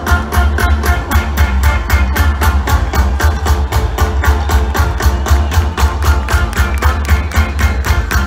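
Live band playing loud through a concert sound system: heavy bass under a steady quick drum beat, about four to five strokes a second.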